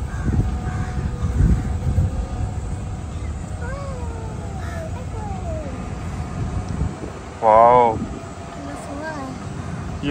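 Steady low rumble of a moving resort buggy, with wind and road noise, and a short loud voice calling out about seven and a half seconds in.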